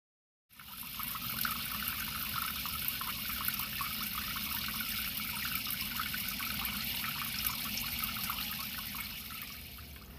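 Tap water running and splashing into a plastic colander of freshly picked chickweed in a stainless-steel sink as the greens are rinsed; a steady rush that starts abruptly and eases off near the end.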